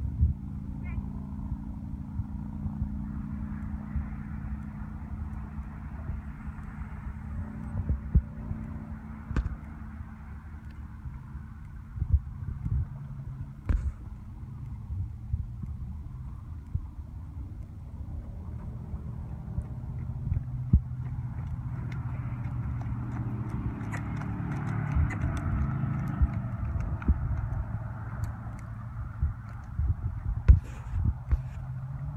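Horse cantering on soft arena dirt, its hoofbeats heard as scattered dull knocks over a steady low hum.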